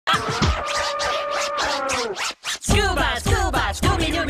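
Cartoon hip-hop song. A held note slides downward, then a brief break comes about two and a half seconds in, followed by fast rapping over a deep bass beat.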